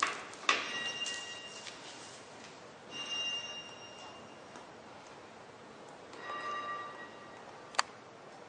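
Knocks and clinks of a plastic bucket against a stainless steel hard ice cream machine as ice cream mix is poured into its hopper, each leaving a brief metallic ring. A sharp knock comes about half a second in and a sharp click near the end.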